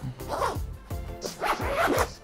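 Backpack zipper being pulled closed around the clamshell laptop compartment, in several short runs.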